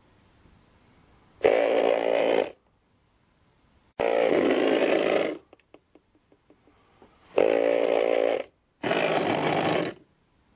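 A small robot built from hobby DC motors buzzing in four bursts of about a second each, with a run of light clicks between the second and third bursts.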